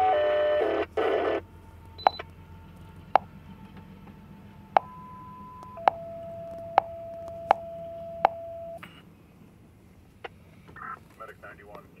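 Emergency-services scanner radio sounding a two-tone dispatch page: a loud cluster of tones at the start, then one tone for about a second followed by a lower tone held about three seconds, with sharp clicks every second or so. A dispatcher's voice comes in near the end, over a low steady rumble.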